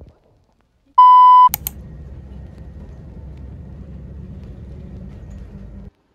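A single loud electronic beep, one steady tone lasting about half a second, about a second in. It is followed by a click and a steady low rumble that cuts off abruptly near the end.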